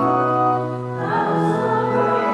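Church music: an organ holding sustained chords, with voices singing that come in more strongly about a second in, a hymn or anthem played during the offertory.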